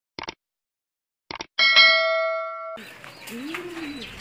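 A few short clicks, then a single bell-like ding that rings for about a second and is cut off abruptly.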